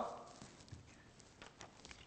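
Faint footsteps on a hard floor, a few quiet, irregular taps, as the echo of the last spoken word fades in a large hall.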